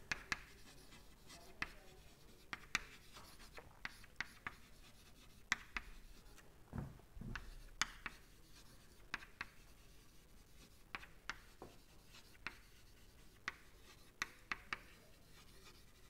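Chalk writing on a chalkboard: faint, irregular sharp taps and short scrapes as the chalk strikes and drags across the board.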